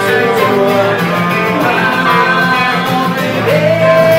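Live band music: an acoustic guitar strummed in a steady rhythm with an electric guitar playing along, and a sliding melody line on top in an instrumental stretch of a rock song.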